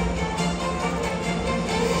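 Show music playing, with a steady low note held under it.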